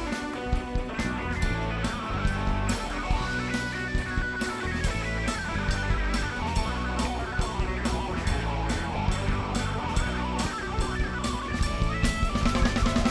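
Live rock band playing an instrumental passage: electric guitars over bass guitar and a steady drum beat.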